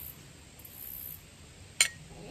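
A single sharp clink near the end, a metal fork tapping a ceramic plate, over a faint steady hiss.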